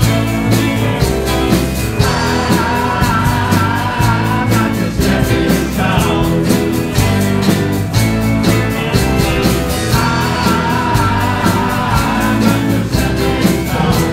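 Live band of several guitars and a keyboard playing a 1960s rock song with a steady beat. Voices sing a line about two seconds in and again about ten seconds in.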